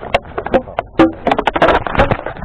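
Dry reeds and grass crackling and snapping right against the onboard camera's microphone, with irregular sharp clicks and knocks of handling. The crackling grows denser and louder in the second second as the foam RC plane is grabbed and lifted out of the grass.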